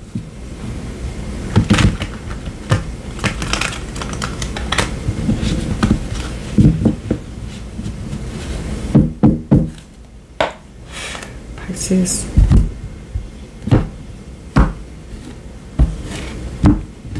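A tarot deck being shuffled by hand: irregular soft slaps and rustles of cards against each other, with a few louder thuds.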